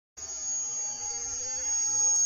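A signal 'sound arrow' giving off one steady, shrill high-pitched whistle that starts a moment in and holds without a break.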